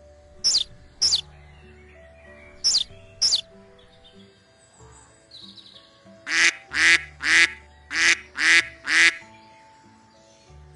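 Duck quacking six times in quick succession, about two quacks a second, over soft background music. Earlier come two pairs of short, high chirps that fall in pitch.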